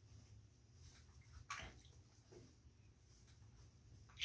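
Near silence: quiet room tone, with one faint, brief rustle about a second and a half in.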